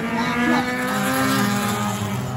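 Race car engine at speed on the circuit, a steady engine note whose pitch sags slightly as the car goes by.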